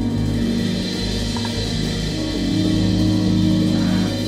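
Live jazz band of keyboards, bass, drums and percussion playing, with long held low notes.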